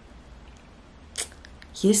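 Quiet room tone with a faint low hum during a pause in speech, broken by one brief hiss about a second in; a woman starts speaking near the end.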